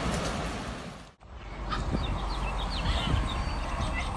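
Glacier ice calving and crashing into the water, a steady rumbling wash that fades out about a second in. After a cut, steady outdoor background noise with a few faint, short high chirps.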